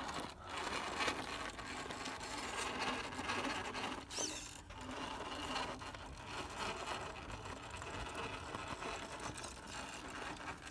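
Redcat Gen8 Axe RC rock crawler's electric motor and gear drivetrain whirring steadily as it creeps over rock, the level swelling and easing with the throttle.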